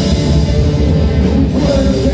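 Live rock band playing loudly and without a break: electric guitars, bass guitar and drum kit.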